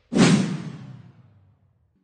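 A whoosh sound effect for a logo reveal: it hits suddenly just after the start and fades away over about a second and a half.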